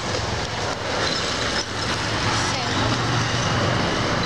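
Motorcycle engine running as it passes along the street, a steady low drone that grows a little louder in the second half.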